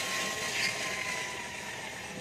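A steady background hum with a faint thin tone running through it, and only a small click or two on top.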